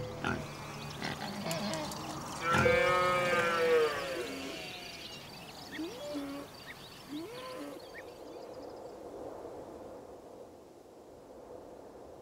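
A cow mooing once, a long call of about a second and a half, followed a few seconds later by two short higher calls. Faint ambient sound, which grows quieter near the end.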